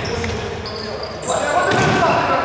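Indoor futsal game on a hard sports-hall floor: players' shoes squeaking in short high chirps, with shouting voices growing louder about two-thirds of the way in, all echoing in the large hall.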